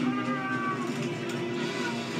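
A dragon's high, cat-like screech, held for under a second near the start, over a steady low drone from the orchestral score, all heard as television audio.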